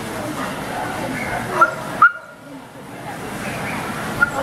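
A dog giving two short, sharp, high-pitched yips about a second and a half and two seconds in, over the murmur of people talking in a large hall.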